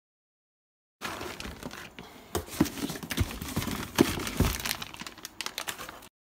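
Silent for about the first second, then plastic packaging and packing paper crinkling and crackling as they are handled, with a few dull thumps.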